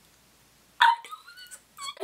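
A woman's short, high-pitched whimpering squeal, starting suddenly about a second in after near silence, with a wavering, gliding pitch.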